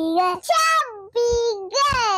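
A young child singing a line of an Urdu children's poem in a high voice, holding long notes and sliding down in pitch at the ends of phrases.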